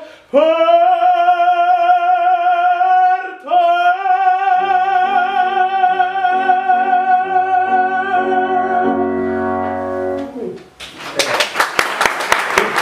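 Male operatic voice holding long final notes with vibrato, with a short break for breath about three and a half seconds in; piano chords enter beneath the last held note. The music ends about ten and a half seconds in and applause breaks out.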